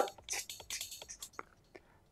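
Faint, tinny dance music leaking from a pair of DJ headphones held near a clip-on microphone, heard mostly as its high percussion ticks, thinning out near the end.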